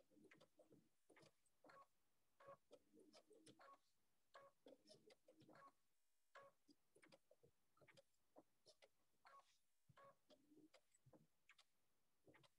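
Near silence, with faint, irregular ticks from a sewing machine stitching slowly.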